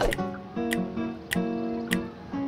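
Background music: strummed acoustic guitar chords over a light, regular beat.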